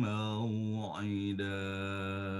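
A man chanting Qur'anic recitation (tilawah), holding one long melodic note with a brief dip in pitch about a second in.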